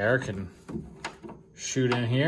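A man's voice in short fragments at the start and near the end, with a few light knocks and clicks between them as hands handle a car's plastic engine lid.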